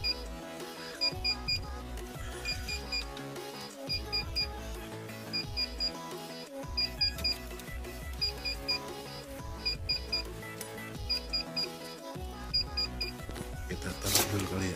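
Automatic banknote counter and counterfeit detector beeping in quick groups of about three short high beeps, repeated every second or so as a note is fed into it.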